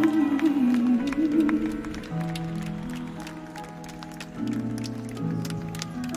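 Live concert music: a male singer holds a wavering note over the band's sustained chords, then the band plays held chords that change a few times.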